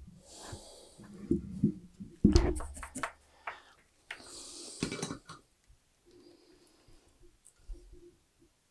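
Handling noises at a soldering bench: a microphone cable and soldering tools are knocked and rustled. There is a loud knock a little after two seconds in and a short hiss about four seconds in.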